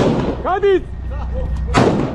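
A single close gunshot near the end, with a reverberating tail, over a steady low rumble of urban combat. A man shouts briefly about half a second in.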